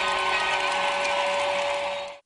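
Short electronic sound-effect sting for a TV programme ident: a dense, steady hissing texture with a few held tones, lasting about three seconds and cutting off suddenly.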